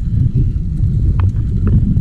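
Wind rumbling on the microphone while riding a Diamondback Wildwood Classic hybrid bicycle on a paved path, with tyre noise and a few light clicks about half a second, a second, and a second and a half in.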